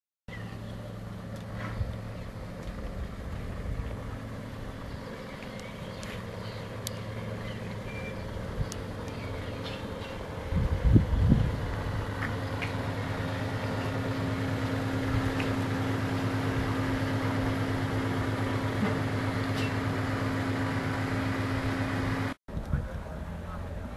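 A machine running with a steady low hum, a higher tone in it growing stronger about halfway. There is a brief loud low rumble about eleven seconds in.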